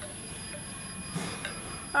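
Steady room tone with a faint, constant high-pitched electronic whine, a soft breath a little past a second in, and a small click shortly after.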